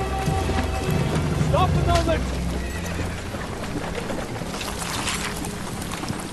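A horse whinnying briefly, a rising and falling cry about a second and a half in, over a film score. It is an ailing horse.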